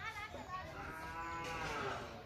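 A farm animal calling: a short call at the start, then one long drawn-out call lasting about a second and a half that rises slightly and falls back in pitch.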